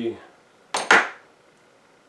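A sharp metallic clank a little under a second in, ringing briefly: a metal part knocked against the mini mill while it is being handled.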